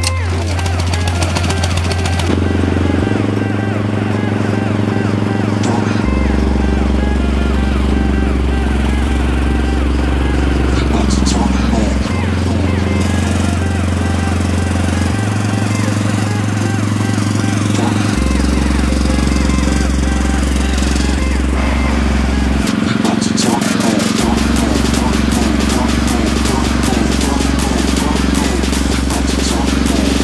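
Background music with a deep bass line that changes note every three seconds or so.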